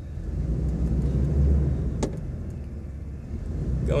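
Jeep's engine running at low speed in reverse, heard from inside the cabin: a low, steady rumble that swells about a second and a half in. A single sharp click sounds about two seconds in.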